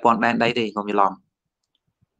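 A man speaking in Khmer for about a second, then cutting off into silence.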